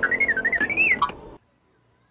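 R2-D2's electronic warbling whistle: a quick run of chirping beeps that wavers up and down in pitch for about a second, then stops.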